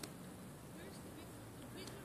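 Faint distant voices over a steady outdoor background hiss, with a brief click at the start.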